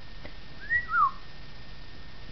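A short two-note whistle like a wolf whistle: a quick rising note followed by a falling one, a little under a second in.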